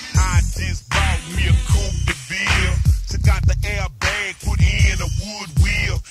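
Chopped-and-screwed hip hop: a slowed-down rap vocal over heavy bass and drums.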